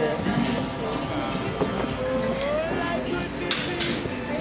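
Background music and voices of people talking, with a short hiss late on.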